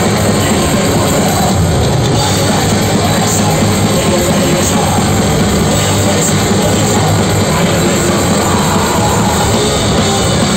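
Heavy metal band playing live: distorted electric guitars and a pounding drum kit in a loud, dense, unbroken wall of sound, heard from within the crowd.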